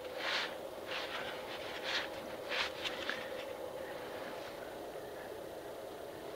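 Quiet room tone: a steady faint hum, with a few soft, short noises in the first three seconds.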